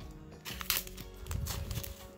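Scissors snipping through a paper card, a few short sharp cuts, over faint background music.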